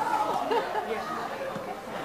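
Indistinct chatter of several voices in a large hall, no single speaker clear.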